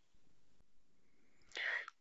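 Near silence with faint room tone, then a short breath in about a second and a half in.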